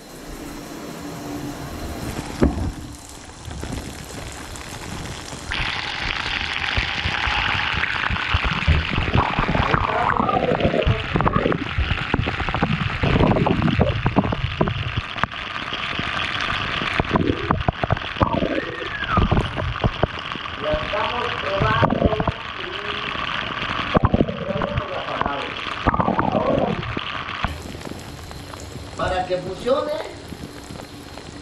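Shower water spraying onto and around a GoPro Hero 7 Black lying in a bathtub, heard through the camera's own wet microphones as a steady hiss. The hiss comes in about five seconds in and stops shortly before the end, with scattered knocks over it.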